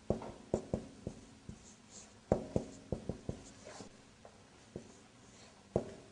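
Marker writing on a whiteboard: a string of short, irregularly spaced taps and strokes of the tip against the board.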